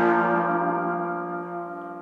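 Three-string pick-axe-handle slide guitar, tuned G-D-G, letting one slide chord ring out and slowly fade away, with no new notes picked.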